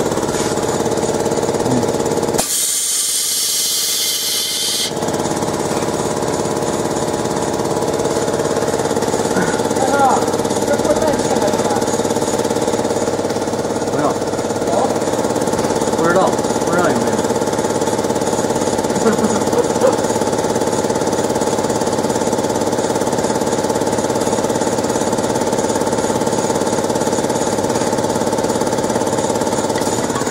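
Steady machine hum of several even tones from a running fiber laser cutting machine. A loud hiss cuts in about two seconds in and stops about two seconds later.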